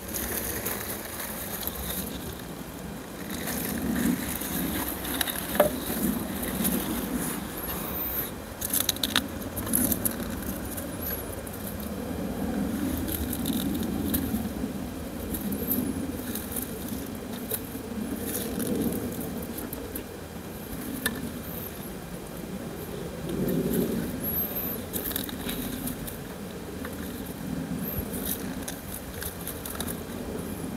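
Onions being pulled from garden soil and laid into a slatted wooden crate: rustling of the stalks, crackle of soil and occasional knocks and scrapes, over a steady low rumble.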